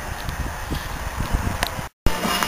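Uneven low rumble of wind or handling noise on the camera microphone, with a few faint knocks. It drops to silence abruptly just before the end.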